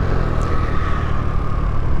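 Boom PYT Revolution 50cc scooter running steadily at road speed, its variator fitted with six-gram rollers, with rushing wind noise over the microphone and a faint steady whine.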